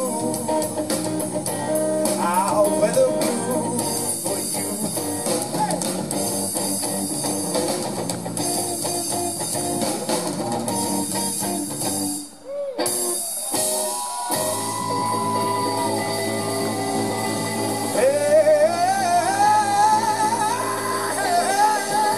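Slow electric blues guitar solo with long bent, gliding notes, played on a guitar built from car exhaust parts, over a drum kit and low backing. The sound dips sharply for a moment about twelve seconds in, then a held bent note and a run of rising bends follow.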